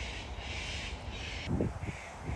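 A series of harsh, cawing bird calls, each about half a second long, in quick succession. The calls stop about a second and a half in, and a brief low thump follows.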